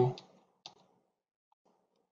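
A single sharp click of a computer keyboard key about two-thirds of a second in, from pressing Ctrl+Z to undo, with a fainter tick or two later; otherwise near silence.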